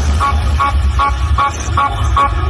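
Loud electronic dance music played through a large outdoor DJ speaker system: a quick, regular run of short horn-like blasts over heavy pulsing bass.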